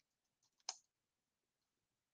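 Computer keyboard keystrokes: a couple of very faint key taps, then one sharper key click a little under a second in, otherwise near silence.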